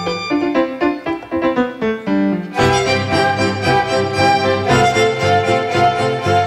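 Youth orchestra of violins, cello and flute playing classical music. A light passage of short, separate notes gives way about two and a half seconds in to the full ensemble, with held low string notes underneath.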